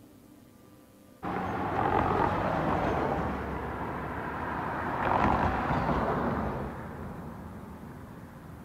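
Street traffic noise that starts abruptly about a second in, swells twice as vehicles pass, and fades away near the end.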